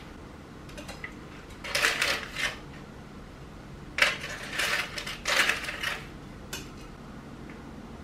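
Ceramic dish and utensils clinking and scraping on a countertop in several short bursts: once about two seconds in, then a run from a sharp clink about four seconds in to about six seconds.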